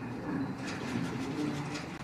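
Quiet hall ambience: a soft, indistinct low murmur with a series of faint, short clicks.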